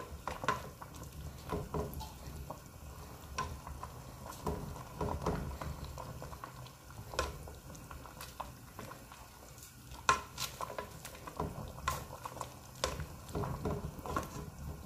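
Wooden spatula stirring and tossing rice noodles (pansit bihon) in a large aluminium pot, with irregular scrapes and knocks against the pot, over the bubbling of the hot cooking liquid.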